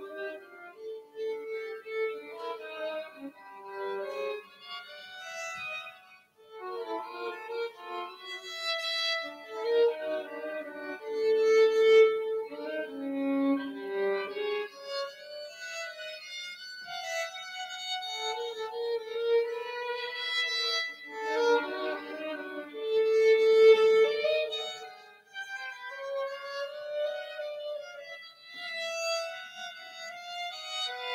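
Two violins playing a duet, bowed notes often sounding together in shifting phrases, with brief breaks about six seconds in and near twenty-five seconds.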